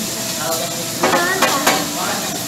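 Sliced meat sizzling steadily on a hot teppanyaki steel griddle, with a few sharp clicks about halfway through.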